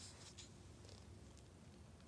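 Near silence: room tone, with a faint rustle of a book's paper page settling about half a second in.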